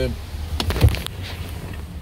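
Handling noise from a phone held in a car cabin: a few short knocks and rustles about a second in, over a low steady rumble.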